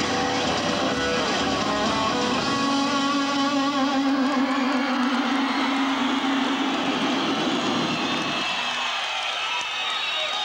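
A live rock band plays with electric guitars. A long held note sounds through the middle and stops about a second and a half before the end, after which the music thins out.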